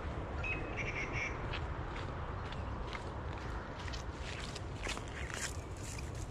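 Birds calling, with a few short high chirps about a second in and a run of short sharp clicks and calls through the second half, over a steady low rumble.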